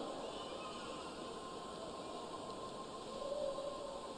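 Quiet hall ambience with a faint, steady high hum, joined by a second faint held tone near the end.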